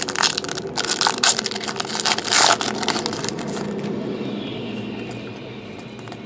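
Foil wrapper of a 2015 Topps Star Wars trading-card pack being torn open and crinkled in the hands: a dense run of crackles, loudest about two and a half seconds in, dying down after about three and a half seconds.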